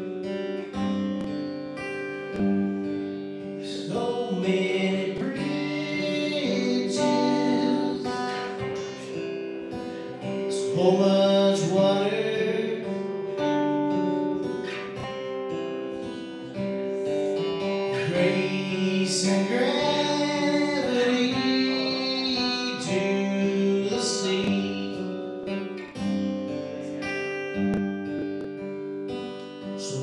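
Acoustic guitar strummed, playing a song live, with a voice singing over it in stretches.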